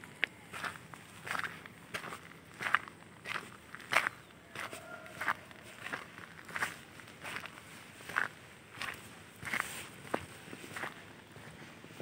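Footsteps of a person walking at an easy pace along a paved path, about one and a half steps a second.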